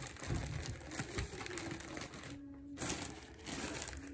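Clear plastic zip-top bags crinkling as they are handled and moved around, in two long stretches with a short pause just past the halfway point.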